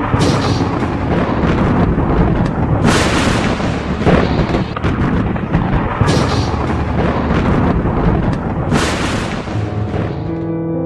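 Loud, dense background music laid over the video, with a heavy crash or boom about every three seconds.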